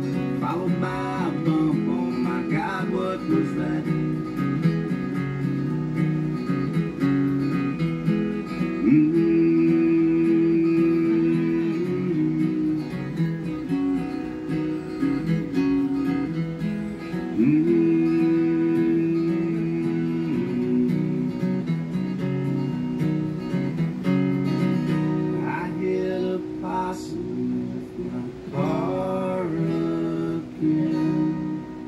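Acoustic guitar music, strummed, playing an instrumental passage of a song with held notes.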